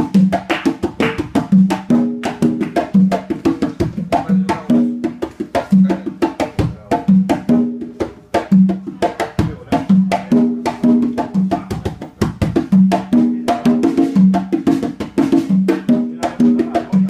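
Guaguancó rumba percussion: conga drums play ringing open tones in a repeating pattern, with a low drum tone returning about every second and a half, over a dense, steady rhythm of sharp wooden clicks.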